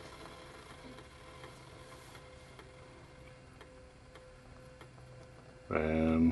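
Quiet room tone: a steady low hum with a few faint, irregular ticks. A brief voice sound comes near the end.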